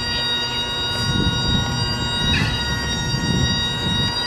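Bagpipes playing, the drones sounding steadily under a long held melody note, with a quick ornamented flourish about halfway through.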